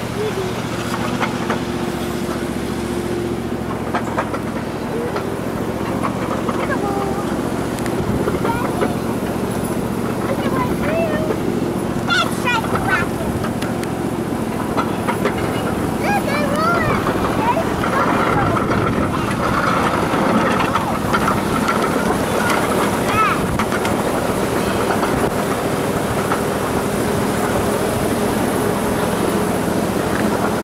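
Small ride-on train running along its track: a steady engine drone with occasional clicks from the wheels and rails.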